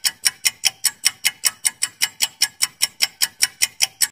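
Countdown-timer clock-ticking sound effect: fast, even ticks about five times a second that cut off suddenly at the end.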